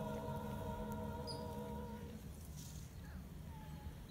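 Mixed-voice a cappella choir holding a final chord that fades away over the first two seconds, followed by a pause with only a low background rumble and a couple of faint, short high chirps.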